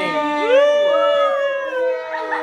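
Several men letting out long drawn-out howling cheers together, held for almost two seconds and slowly falling in pitch.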